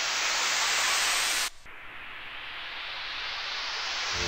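White-noise riser effects in a deep house track, a filtered hiss sweeping upward and swelling. The first cuts off abruptly about a second and a half in, and a second one builds until the music comes in at the end.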